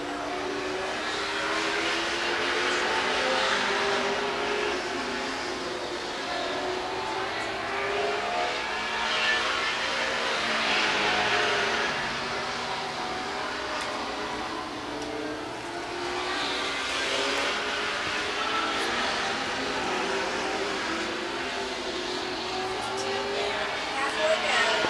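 Late model stock car engines racing on an asphalt oval, their pitch rising and falling with the laps. The sound swells and fades about every seven seconds as the pack comes past.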